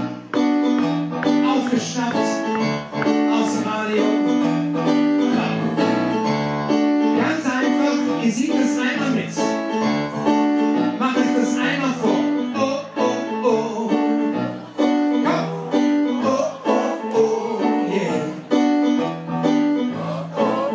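Live stage piano playing a steady, rhythmic accompaniment while a man sings into a microphone, amplified through a PA.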